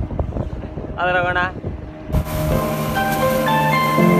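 Wind buffeting the microphone on a moving fishing boat, with a short burst of a man's voice about a second in. About two seconds in, background music starts and takes over.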